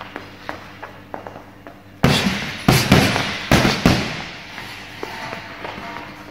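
Boxing gloves punching a heavy bag: about two seconds of light taps, then a burst of about five solid hits within two seconds.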